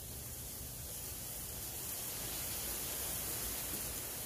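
Steady, even hiss of background noise with no distinct events, growing slightly louder in the middle.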